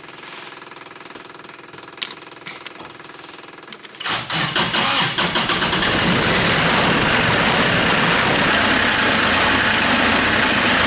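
Kioti compact tractor's diesel engine being started with the key: after a faint steady hum and a click, it cranks about four seconds in, catches and settles into a steady idle.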